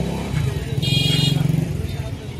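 A motorcycle engine running steadily, with a short high horn blast about a second in.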